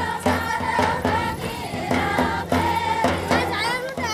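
A group of Banjara women singing a traditional Holi phag folk song together, with a drum beating a steady rhythm underneath.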